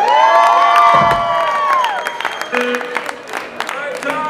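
Audience cheering: long held whoops that rise at the start and fall away after about two seconds, over scattered claps and shouts.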